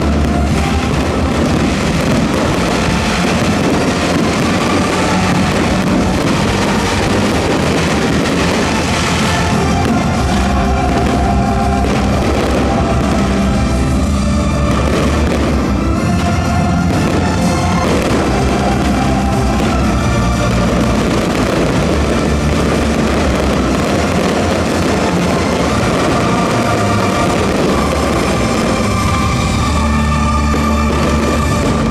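Loud music from a musical fireworks display, with fireworks bursting and crackling beneath it.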